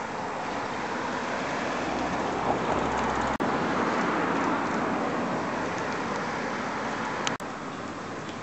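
Steady road traffic noise, swelling in the middle and easing off later, cut twice by brief gaps.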